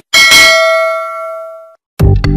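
Notification-bell sound effect: a single bell ding that rings on and fades over about a second and a half, then cuts off abruptly.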